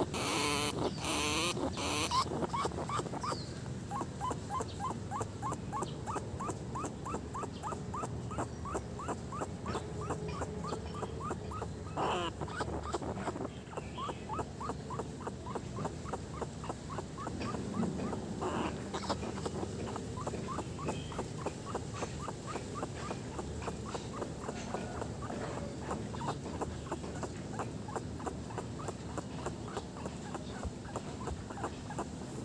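A rat caught in a metal cage trap making a long run of short, rhythmic sounds, a few a second, with a louder sharp sound about twelve seconds in.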